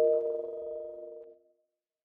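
The last sustained chord of an intro music sting dies away over about a second and a half, leaving silence.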